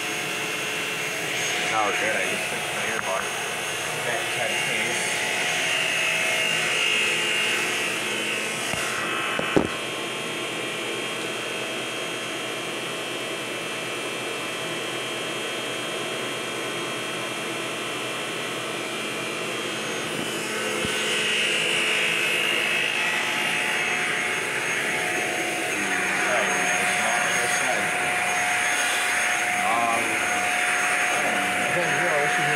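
Shark Apex upright vacuum cleaner running steadily over carpet, a whining motor hum with held tones. There is a single sharp knock about ten seconds in, after which it runs quieter for about ten seconds before growing louder again.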